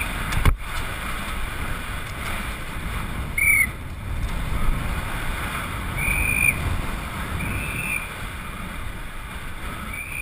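Wind rushing over the microphone of a camera mounted on a downhill mountain bike at speed, with a steady rumble from the tyres on pavement. A sharp knock comes about half a second in, and a few brief high squeals follow later on.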